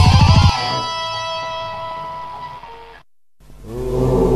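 Heavy rock music with drums and electric guitar stops abruptly about half a second in, leaving an electric guitar chord ringing and slowly fading. After a brief silence, a new sustained sound swells in near the end as the next track begins.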